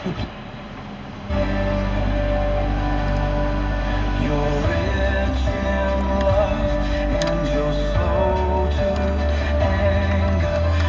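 Music from the Bose factory car stereo, coming on about a second in after the radio seeks to a new FM station, then playing steadily with a strong bass line.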